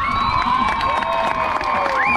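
Crowd cheering after a marching band performance, with many high shouts and whoops that glide up and down in pitch over scattered clapping.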